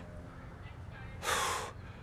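A man's single short, breathy gasp, about half a second long, a little over a second in.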